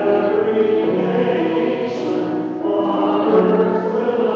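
Church choir singing the sung responsorial psalm of a Catholic Mass, held notes changing pitch every second or two.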